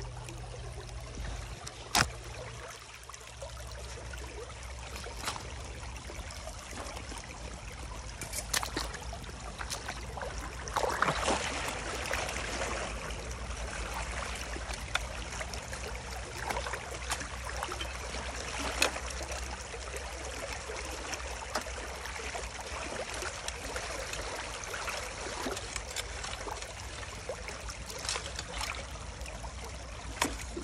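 Water running through an opened beaver dam, with a long-handled rake splashing and scraping through the shallow water and a few sharp knocks. The splashing is loudest about eleven seconds in.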